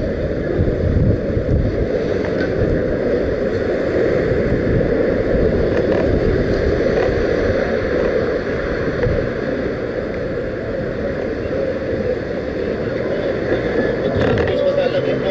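Steady rushing wind noise on the microphone of a camera moving along a city street, over a continuous low rumble.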